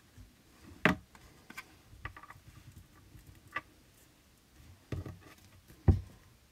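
Paper and card strips being handled and pressed together on a craft table: faint rustling and scratching with a few sharp taps and clicks, the loudest just before the end.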